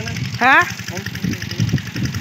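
A short, loud rising vocal sound from a person about half a second in, over a steady low pulsing hum like a small idling motor.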